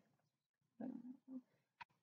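Near silence: a woman's faint, short murmur about a second in, then a single brief click near the end.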